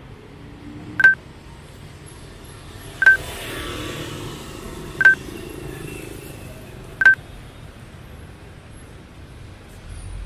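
Four short, identical high electronic beeps, evenly two seconds apart, over a low background of street traffic noise.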